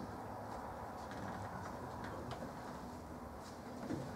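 Quiet lecture-room room tone: a steady low hum with a few faint ticks, and a sharper click near the end.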